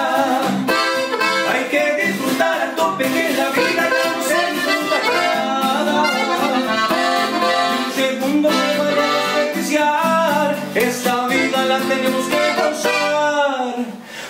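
Norteño music played live: a button accordion and a twelve-string acoustic guitar, with a man singing the lead.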